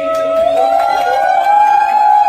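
A group of people singing together, holding one long loud note that slides up in pitch about half a second in and is held there.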